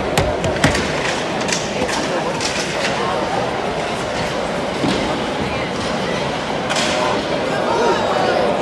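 Ice hockey play heard from rinkside: sharp clicks and knocks of sticks, puck and skates on the ice and boards, most of them in the first three seconds and again near the end, over a steady arena crowd murmur.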